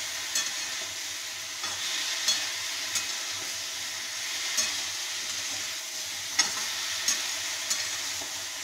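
Chopped vegetables sizzling in hot oil in a wok-style pan, stirred with a metal spatula that scrapes and knocks against the pan about eight times, the sharpest knock near the end.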